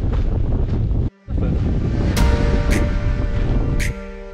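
Wind buffeting the microphone with a heavy, steady rumble, broken by a brief cut about a second in. Background music then comes in over the wind, with a few sharp percussive hits, and is taking over by the end.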